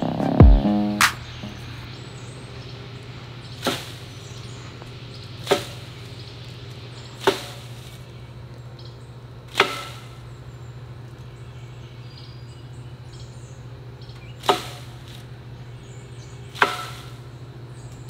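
A tree branch being knocked with a piece of wood to shake bugs loose: six sharp knocks, spaced unevenly two to five seconds apart.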